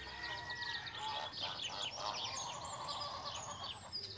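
Bird calls from a countryside sound effect: many quick, high chirps throughout, with a longer held call in the middle.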